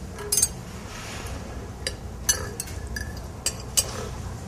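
Forks and knives clinking against ceramic plates as food is cut for tasting: several short, sharp clinks spread through, over a low room hum.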